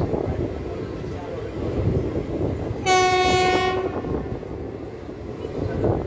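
Passenger train running along the track, a steady rumble and rattle heard from the open coach doorway. About halfway through, a locomotive horn sounds once, one steady high note lasting about a second.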